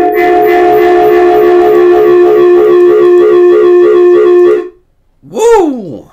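An extremely loud sustained chord of several steady tones with a slight regular pulsing, cutting off suddenly about 4.7 seconds in. This is the blowout the host blames on his unmuted microphone. Near the end comes a short swoop that rises and then falls in pitch.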